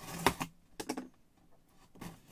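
Utility knife cutting through the tape seal on a cardboard box: a short scratchy cut, then a second short burst of clicks about a second in.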